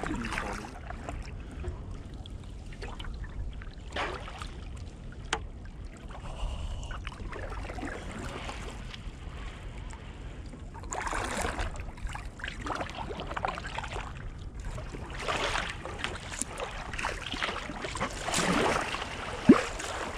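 Water splashing and sloshing around a sea kayak's hull in irregular bursts, as paddle strokes go in, over a steady low rumble of wind on the deck-mounted camera. A single sharp knock near the end is the loudest sound.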